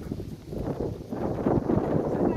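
Wind rumbling on the microphone, with footsteps of several people walking on dry, sandy ground.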